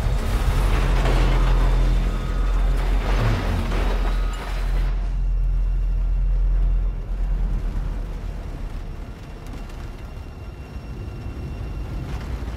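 Science-fiction film sound design: a loud, deep rumble with two hissing, whooshing swells in the first four seconds. It eases off after about seven seconds into a quieter, lower rumble.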